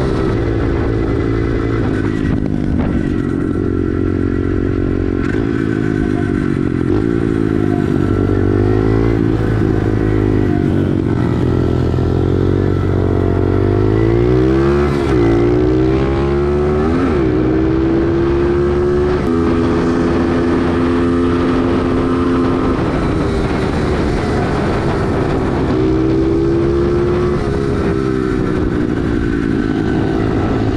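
Pit bike's small single-cylinder engine running under way, its pitch rising and falling with the throttle. Through the middle it climbs, with a few sudden jumps in pitch, then holds steadier.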